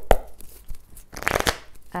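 A deck of oracle cards handled and shuffled by hand: a sharp tap of the deck right at the start, then a quick burst of cards sliding and slapping together a little over a second in.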